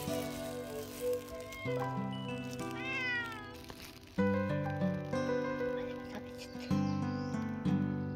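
A stray cat meows once about three seconds in, a call that rises and then falls. Background music of held notes plays throughout.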